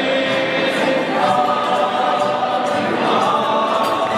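A group of voices singing together in choir fashion, with long held notes.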